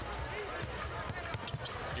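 A basketball being dribbled on a hardwood court: a series of short bounces.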